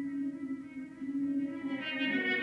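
Brass ensemble holding long sustained notes, with a trumpet playing through a metal straight mute alongside a French horn. A steady low held note continues throughout, and a brighter note swells in about one and a half seconds in.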